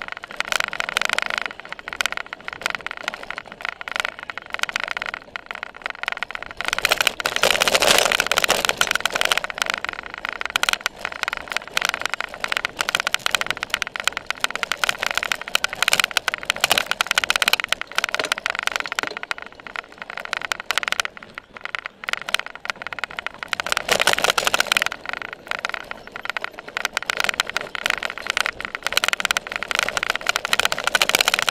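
Cyclocross bike ridden hard over bumpy grass, heard from a seat-mounted camera: a continuous rattling clatter of the bike and mount over rough ground, with tyre and drivetrain noise. It grows louder around 8 seconds in and again near 24 seconds.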